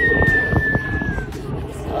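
Music with one long high held note that sags slightly in pitch and fades out just past halfway, over a steady low rumble.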